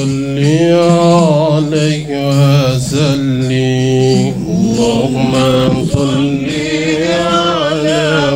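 A man's voice chanting a salawat on the Prophet in Arabic into a microphone, drawing the syllables out into long held notes with wavering, melismatic ornaments.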